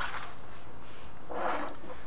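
Steady background hiss of the recording, with a faint, soft unpitched rush about one and a half seconds in.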